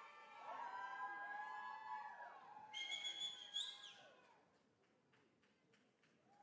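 Audience members cheering and whooping in overlapping calls for a graduate crossing the stage, with a shrill, high-pitched call about three seconds in. After that the cheering dies down to a few faint claps.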